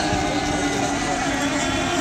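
Several 1/8-scale nitro-engined RC hydroplanes running on the water together, a steady blend of high engine whines held at an even pitch, as the boats circle in the pre-start mill.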